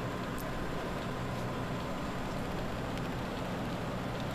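Steady background hiss with a low hum underneath, with a couple of faint light ticks near the start.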